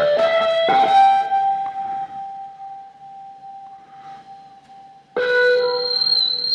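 Electric guitar notes: a note picked about a second in rings on and slowly fades over several seconds, then near the end a new, steady tone cuts in sharply.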